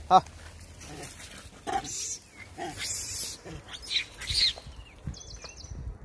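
A troop of monkeys calling and squealing at a feeding, with people's voices mixed in. There is a short pitched call at the very start and a high squeal that rises and falls about four seconds in.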